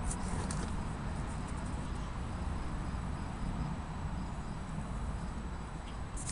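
Steady low rumble and hiss of outdoor background noise, with a few light clicks in the first second.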